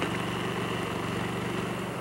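Small gasoline engine of a walk-behind pavement saw running steadily while its blade cuts a slot in an asphalt overlay.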